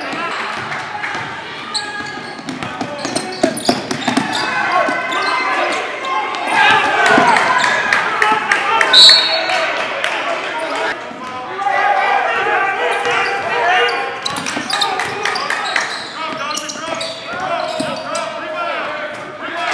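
Live basketball game sound in a gym: voices of players and spectators calling out over one another, with a basketball bouncing on the hardwood court and sharp knocks from play. A brief shrill high tone sounds about nine seconds in, the loudest moment.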